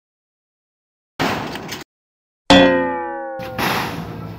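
Cartoon-style sound effects laid over the picture: a short rushing noise, then a loud sudden hit whose ringing tone slides down in pitch like a boing, then another rushing noise about a second later.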